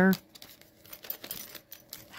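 Small clear plastic packet crinkling as it is handled, with light clicks of the little tools inside shifting against each other.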